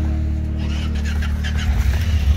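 Side-by-side UTV engine running low and steady, growing a little louder and rougher near the end, with light clicks over it in the middle.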